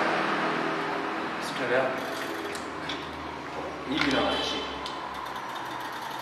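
Speech: a man talking in short phrases with pauses between them.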